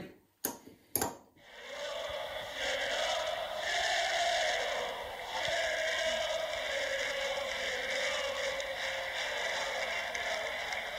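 Two sharp clicks, then a steady static-like hiss with a faint wavering tone running under it.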